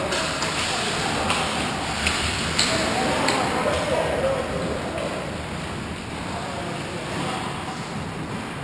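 Ice hockey play at close range: skates scraping the ice and about five sharp clacks of sticks and puck in the first three and a half seconds, with indistinct shouts from players.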